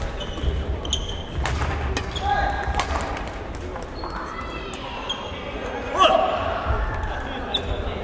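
Badminton play in a large hall: sneakers squeaking and thumping on the wooden court floor, with a few sharp racket-on-shuttlecock hits, the loudest about six seconds in, and voices around.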